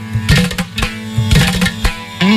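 Carnatic veena music in raga Gaudamalhar: a Saraswati veena plucking a phrase of quick notes over its drone strings, with hand-drum strokes in the accompaniment.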